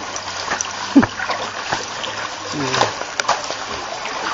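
Shallow water splashing and sloshing as hands stroke and grip giant eels moving at the surface, with a few small splashes and drips.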